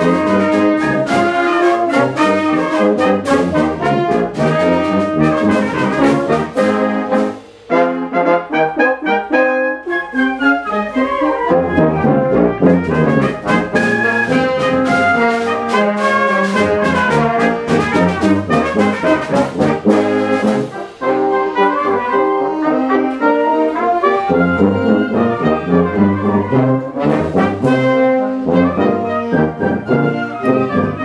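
Wind ensemble playing a piece together, the brass prominent over the woodwinds, with a brief break about a quarter of the way in and a short dip about two-thirds through.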